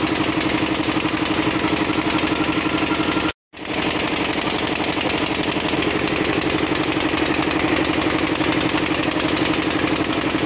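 A small engine idling steadily with a fast, even throb. It drops out completely for a moment about a third of the way in, then resumes.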